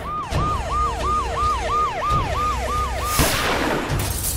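A police siren sound effect wailing up and down about three times a second over a low pulsing music bed. It breaks off about three seconds in, where a loud whoosh takes over.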